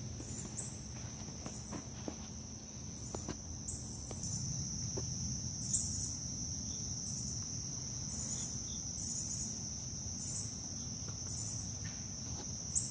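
Chorus of insects: a steady high trill with a second, higher call pulsing over it about once a second or a little faster.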